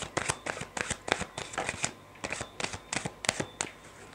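A deck of playing cards shuffled by hand: a quick, irregular run of soft card clicks and slaps that thins out near the end.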